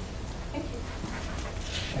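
Quiet room tone: a steady low hum with faint rustling near the end.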